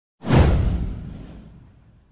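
A whoosh sound effect with a deep low boom under it. It starts abruptly a fraction of a second in, sweeps downward in pitch and fades away over about a second and a half.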